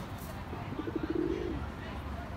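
Feral pigeon giving a single low, rolling coo about a second long, starting about half a second in.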